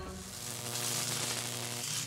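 A steady hiss of noise, with a faint low hum beneath it.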